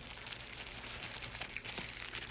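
Faint crinkling and rustling of paper fast-food sandwich wrappers being handled, with scattered small crackles.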